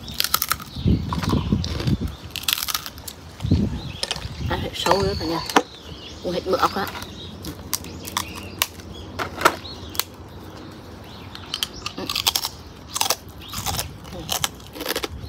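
Crunching and chewing of a crispy grilled rice cracker close to the microphone, with sharp cracks as pieces are bitten and snapped off, scattered irregularly.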